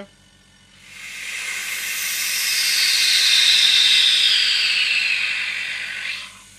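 Air hissing into a vacuum chamber through its release valve as the vacuum is let off, so that atmospheric pressure pushes the resin down into the dice molds. The hiss starts about a second in, swells to its loudest midway, then eases and slowly falls in pitch before stopping suddenly near the end.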